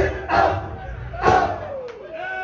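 Men shouting at a live hip-hop show, two loud shouts about half a second and a second and a half in, over crowd noise. Underneath, the deep bass of the beat fades out.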